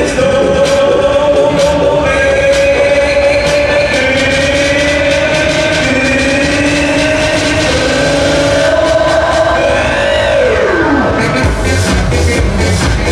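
Loud electronic dance music from a fairground ride's sound system, with long held notes and a falling sweep about ten seconds in; a heavy bass beat kicks in near the end.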